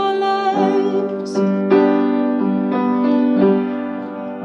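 Piano accompaniment playing sustained chords, a new chord struck about once a second from about half a second in.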